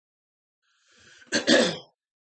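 A man coughs: a quick double cough about a second and a half in, after a faint intake of breath.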